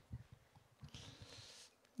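Near silence: quiet hall room tone with faint low thumps and a soft hiss from about a second in, lasting under a second.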